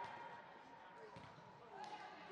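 Faint voices of players and spectators echoing in a large indoor sports hall, with a dull thump of a soccer ball being kicked a little over a second in.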